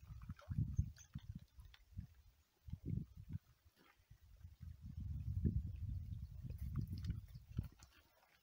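Wind buffeting the microphone in gusts, a low rumble that comes and goes and is heaviest in the second half.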